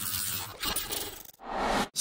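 Electronic glitch transition sound effect: a crackling, scratchy hiss that fades, then a short swell that cuts off sharply.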